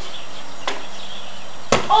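A basketball shot striking the hoop with one sharp impact near the end, after a faint tap about a third of the way in, over a steady hiss.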